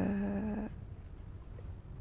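A woman's drawn-out hesitation vowel, a held 'ehh' at one steady pitch, which stops under a second in; then a short pause with only faint room tone.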